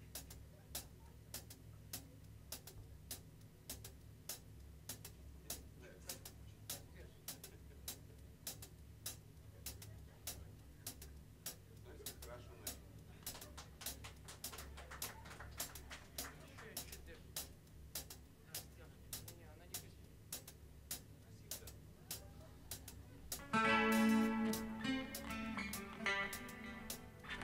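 Quiet live jazz trio: the drum kit keeps time with soft, even cymbal ticks, about one and a half a second, over a low double bass. About 23 seconds in, the guitar comes in with a louder run of notes.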